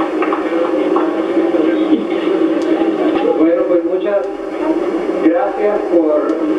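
Indistinct chatter of a crowd, many voices talking at once with no single clear speaker.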